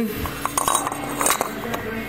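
Light metallic clicks and clinks from the cast valve cover of a 186F diesel being handled and turned, its loose built-in PCV valve rattling faintly.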